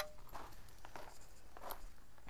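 Footsteps, heard as a few short, irregular scuffs and clicks, with clothing brushing against a clip-on microphone.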